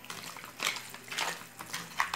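Raw chicken pieces being stirred with their seasonings in a dish: scattered short clinks and scrapes against the dish, a few each second.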